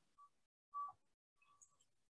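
Near silence, with a few faint, short beep-like tones at one pitch, the clearest a little under a second in.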